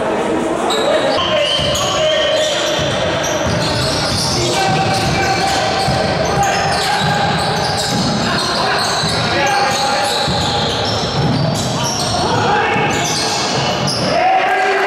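Live basketball game sound in a gym: a basketball bouncing on the hardwood court, with players' and spectators' voices and calls carrying through the hall.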